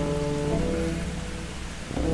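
Steady rain hiss coming in through an open window, under soft background music of held notes that shift every half second or so.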